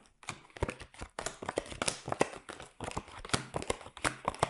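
Tarot cards being handled and laid down onto a card mat on a table: a run of light, irregular taps and clicks.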